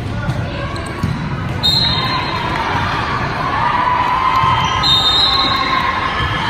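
Indoor volleyball play in a large, echoing gym: dull thuds of the volleyball being hit and bouncing on the court. Voices and crowd noise grow louder about two seconds in.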